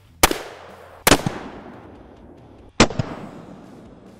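.500 Magnum revolver firing: three sharp, loud bangs, the first just after the start, the second about a second in and the third near three seconds, each trailing off in echo.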